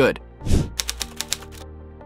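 Editing sound effect for a title reveal: a whoosh with a deep low hit about half a second in, then a quick run of typewriter-like key clicks, over soft background music.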